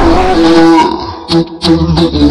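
A dancing cactus toy playing a tinny Latin-style tune in held, stepping notes. The tune drops out briefly about a second in and then resumes. Over it a voice says "God" and laughs.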